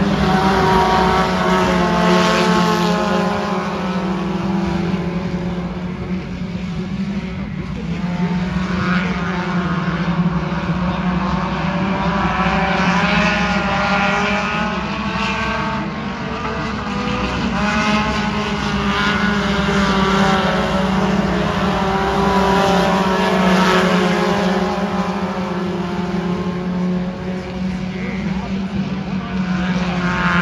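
Several dirt-track stock cars running laps on the oval, their engines rising and falling in pitch as they go around and pass, over a steady low drone.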